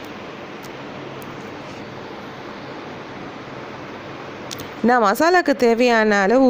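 Steady hiss with a faint low hum from chicken keema cooking in a stainless steel kadai on the stove, with a few faint clicks. A voice starts speaking near the end.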